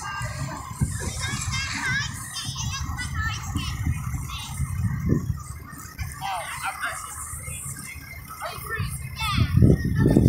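Children's voices shouting and calling out in short, high squeals over other people's chatter, with a steady low rumble underneath.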